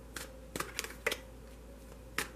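A deck of cards being shuffled by hand: several light, quick card snaps, clustered in the first second or so and again near the end, over a faint steady hum.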